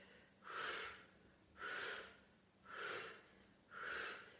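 A woman's forceful breaths out through the mouth, four short hissing exhalations about a second apart, each paced with a repetition of a Pilates leg exercise.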